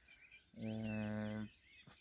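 A man's drawn-out hesitation sound, a flat hum held for about a second in the middle, with faint birdsong behind it.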